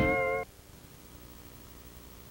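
A held, pitched note from a commercial's soundtrack cuts off abruptly about half a second in. After it comes only the faint steady hiss of a VHS tape recording.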